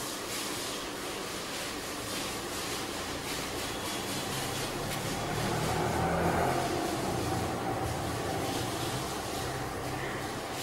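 Steady low background rumble with a faint hum, growing louder about five seconds in and easing off again a few seconds later.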